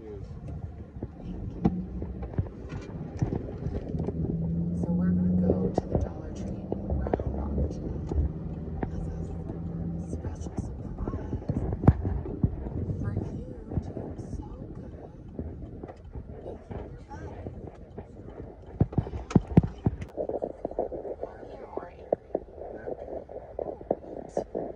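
Car-cabin hum with a steady low drone, overlaid by frequent small knocks and rustles from a hand-held phone microphone being handled, and faint muffled voices.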